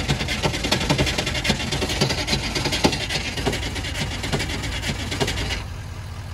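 Detroit Diesel engine of an old box van running roughly on ether just after a cold start, a fast, rasping clatter that thins out and drops a little near the end, as the engine struggles to keep running.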